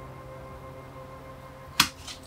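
Bonsai cutters snipping through a thin ash branch once near the end, a single short sharp snap, over soft background music with held notes.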